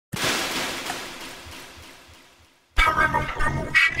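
An intro sound effect: a hissing whoosh starts loud and fades away over about two and a half seconds, with a few faint low thuds under it. About three seconds in, a voice laughs and starts to speak.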